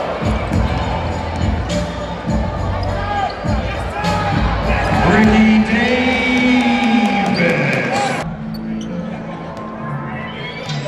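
A basketball being dribbled on a hardwood court, with repeated bounces heard against arena crowd noise and music. The sound changes abruptly a little after eight seconds in.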